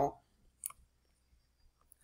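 A single computer mouse click about a third of the way in.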